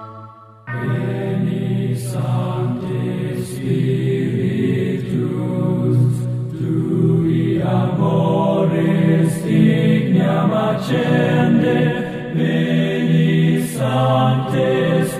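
Background music: a held organ-like chord fades out, and under a second in, chanted choral singing starts suddenly and continues.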